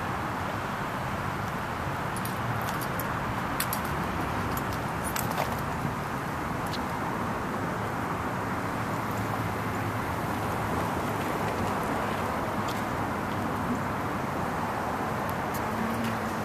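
Steady outdoor background noise from traffic and machinery, an even hiss-like hum with no change in level, broken by a few faint clicks.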